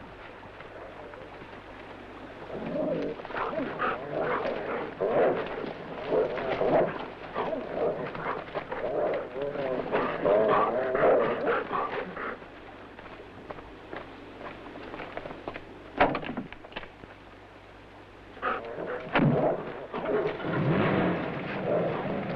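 Search dogs barking and baying in two spells, a longer one early on and a shorter one near the end, with a quiet gap broken by a single sharp click.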